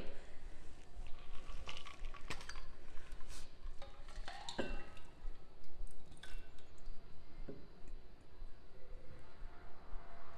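Cocktail pouring from a stainless steel shaker into a glass over ice, with a few metallic clicks and clinks as the shaker is opened and tipped. The liquid trickles and splashes into the glass.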